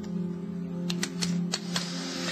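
Soft background score of sustained low notes, with a quick run of four or five light clicks in the second half: glass clinking as a bottle and glassware are handled at a drinks trolley.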